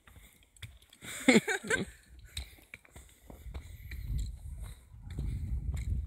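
Footsteps on a forest path with a low rumble of the phone being carried, getting stronger in the second half. A short wavering vocal sound from a person, about a second in, is the loudest thing.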